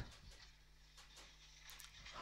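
Near silence, with a faint steady hum.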